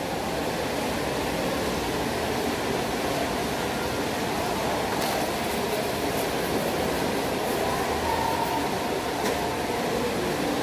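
Steady background noise of a mall food court: an even roar with no distinct events.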